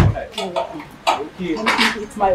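A car door shuts with a sharp knock right at the start, followed by a man and a woman talking quietly.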